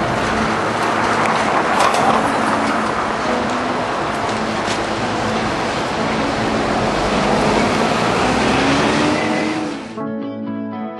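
Busy city street traffic: a steady wash of vehicle and tyre noise, with one engine rising in pitch near the end.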